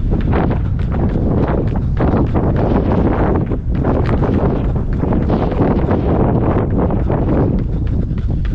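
Wind buffeting the microphone of a camera carried by a runner at dash pace, a heavy steady rumble. The runner's footfalls strike in a quick, even rhythm under it.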